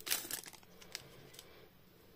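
Foil Pokémon booster pack wrapper crinkling as it is handled and laid down after being opened, loudest about the first half second, followed by a few light taps and rustles.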